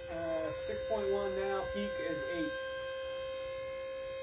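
Steady electric hum of a rope pull-test machine's motor, tensioning a single rope while a prusik hitch slides along it. Faint voices come through in the first half.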